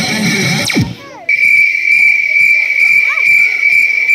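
Guitar-backed dance music stops about a second in. After a brief dip, a loud, steady high-pitched whine sets in and holds, with faint voices beneath it.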